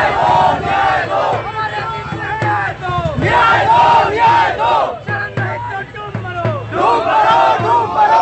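A crowd of protesters shouting slogans together, loudest in two surges: about three seconds in and again near the end.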